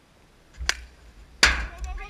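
Hollow plastic wiffle ball cracking off a plastic wiffle bat, a sharp click. A second, louder clack follows under a second later, then players' voices shouting near the end.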